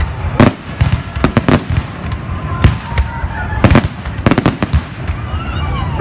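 Fireworks display: a string of sharp bangs as aerial shells burst, some single and some in quick clusters of three or four, over a low rumble.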